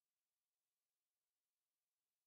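Near silence: the sound track is essentially empty, with only a faint, even hiss.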